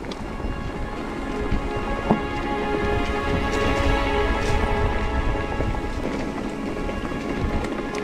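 Mountain bike rolling down a leaf-strewn dirt singletrack: a steady rushing noise of knobby tyres on dry leaf litter and dirt, with low rumble from riding.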